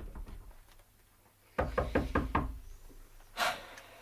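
Knocking on a door: a quick run of about five knocks about a second and a half in.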